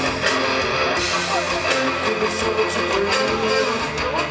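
Rock band playing live through a loud festival PA: strummed electric guitar over bass and drums, heard from the crowd.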